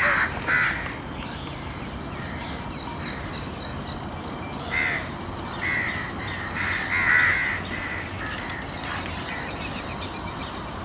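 Short, harsh cawing bird calls: one at the very start, one about five seconds in, and a run of several around seven seconds, over a steady high background hiss.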